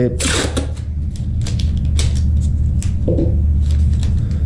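Masking tape being pulled off the roll: a short tearing rip just after the start, then scattered crackles and clicks as the strip is handled, over a steady low hum.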